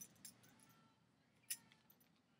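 Near silence with a couple of faint clicks, the sharper one about a second and a half in, as a small vanilla bottle is handled.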